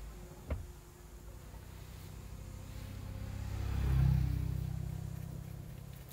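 Speedboat engine running under way, a low hum that swells to its loudest about four seconds in and then eases off, with a single click about half a second in.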